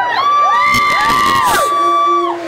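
High wordless voices gliding up and down in short arcs over a live rock band, with one note held for about a second in the middle.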